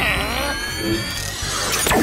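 Cartoon sci-fi sound effect of a ray cannon firing energy waves: several electronic tones sweep upward together over about the first second, then a sharp zap near the end.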